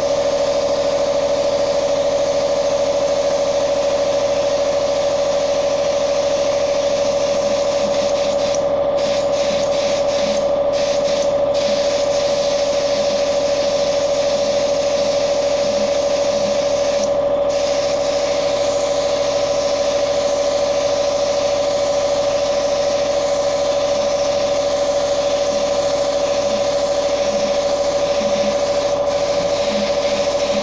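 Spray-painting equipment running steadily: a constant machine hum with a hiss of spraying paint over it, the hiss briefly dropping out a few times.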